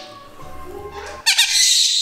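Soft background music, then about a second in a moustached parakeet lets out a loud, harsh squawk that carries on past the end. It is the call he makes when he doesn't want his owner to leave.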